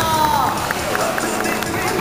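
A crowd clapping over background music played over a PA system, with a woman's amplified voice trailing off at the start.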